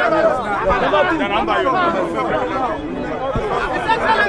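Chatter of a dense crowd: many voices talking over one another at once.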